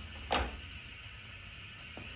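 A single short click or knock about a third of a second in, then quiet room tone.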